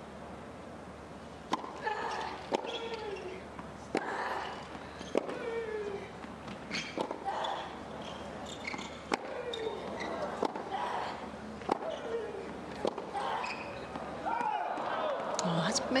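Tennis rally: the ball struck by rackets back and forth, one sharp hit about every second and a bit, most hits followed by a player's short falling grunt. Crowd noise rises near the end as the point finishes.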